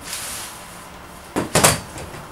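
Tripod light stand being handled: a short rustle, then two sharp clacks in quick succession about a second and a half in.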